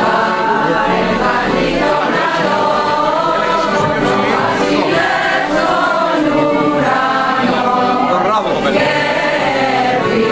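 A group of voices singing a song together, steady and unbroken.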